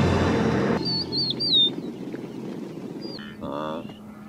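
Soundtrack music cutting off under a second in, leaving faint outdoor ambience with a bird chirping several times, then a short wavering call near the end.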